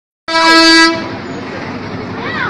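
A vehicle horn gives one loud toot, about half a second long, starting a moment in. A lower, steady background of street noise follows.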